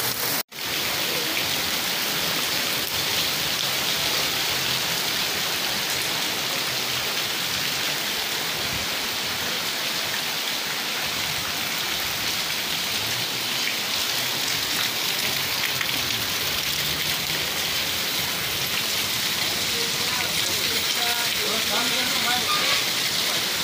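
Heavy rain pouring steadily onto flooded road and pavement, an even hiss of drops splashing into standing water. The sound cuts out briefly about half a second in.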